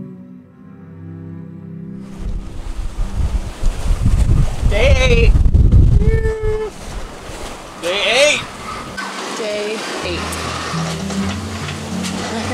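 Wind and rough sea rushing past a sailboat, with heavy wind buffeting on the microphone in the middle and a few short voice sounds. Background music fades out at the start and comes back near the end.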